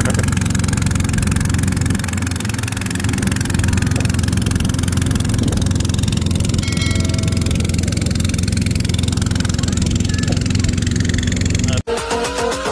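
Small boat's outboard motor running steadily under way, a constant low engine drone over rushing air and water noise. It cuts off abruptly near the end, giving way to electronic music.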